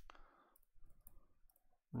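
Faint, scattered clicks and taps of a stylus writing on a pen tablet.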